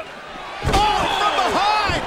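Two heavy thuds of bodies slamming onto a wrestling ring's canvas, about a second apart, with voices over them.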